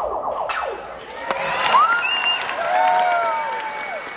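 Audience applauding and cheering, with several long whoops and whistles that rise and fall in pitch.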